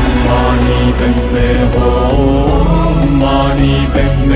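Devotional music with a chanted mantra vocal over steady low sustained notes.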